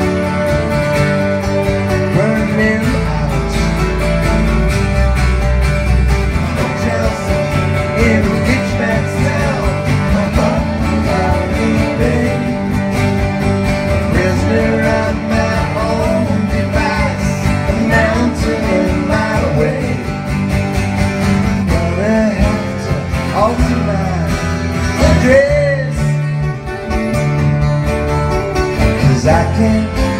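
Live band music: strummed acoustic guitars over an electric bass.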